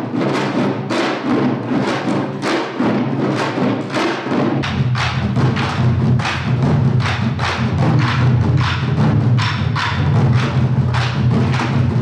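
An ensemble of Korean traditional drums, janggu hourglass drums and buk barrel drums on stands, struck with sticks in a steady rhythm of about three strokes a second. About four and a half seconds in, a deep sustained low tone joins beneath the drumming.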